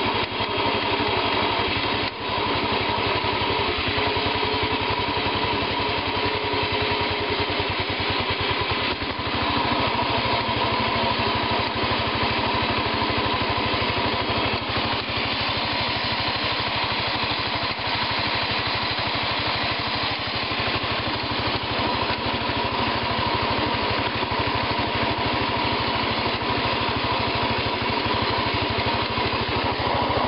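Sears Suburban 12 garden tractor's 12 hp Tecumseh single-cylinder engine running steadily as the tractor drives across grass.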